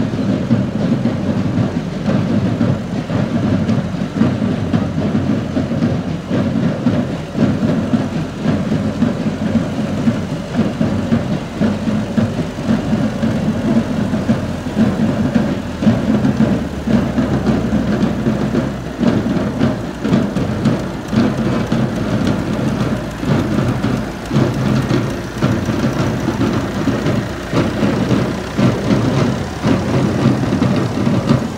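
Farm tractor engine running steadily as the tractor drives slowly past, pulling a trailer. Its low rumble deepens and grows stronger about halfway through as it comes closest.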